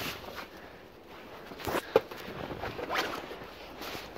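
Plastic garbage bag rustling and rubbing as a flat-screen monitor is pulled out of it, with a few brief louder scrapes about two and three seconds in.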